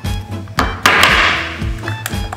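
Background music, over which a spice container is handled: a sharp click about half a second in, then a short loud rustling burst about a second in, and another click near the end.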